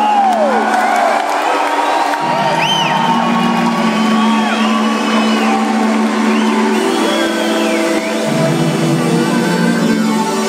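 Live electronic music: sustained synth chords with no drumbeat, the bass stepping to a new note about two seconds in and again near the end. Crowd whoops and cheers rise over the music.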